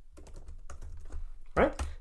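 Typing on a computer keyboard: a run of quick, irregular keystrokes that stops about one and a half seconds in.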